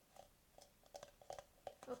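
A scattered series of faint clicks and taps from hands handling a clear plastic jar, pressing a hot-glued wooden stick against its inside wall.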